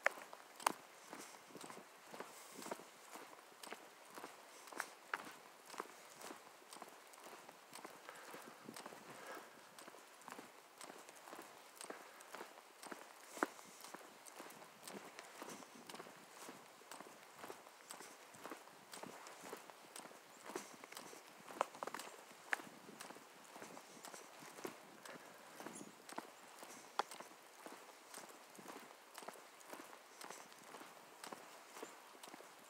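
Faint footsteps walking at a steady pace on a paved asphalt trail, a regular run of soft clicks with a few sharper ones among them.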